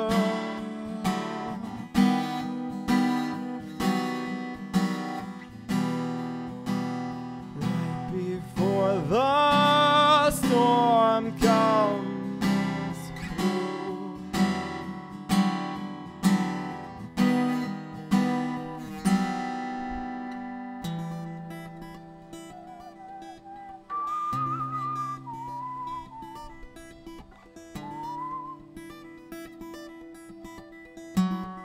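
Acoustic guitar strummed in steady chords, with a brief wordless vocal line about ten seconds in. After about twenty seconds it drops to quieter, sparser playing that fades toward the end.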